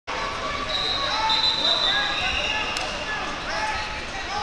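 Wrestling shoes squeaking on the mats, with the chatter of many voices in a big gym hall.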